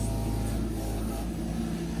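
Kubota mini excavator's diesel engine running steadily.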